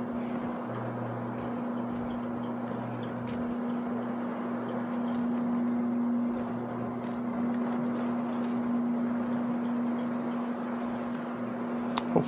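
Rotary carpet-cleaning machine running steadily, its electric motor giving a constant low hum while the spinning pad scrubs across the carpet pile.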